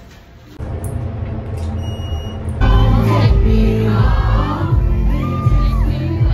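Music with a heavy bass beat and singing. It comes in faint about half a second in and turns much louder about two and a half seconds in.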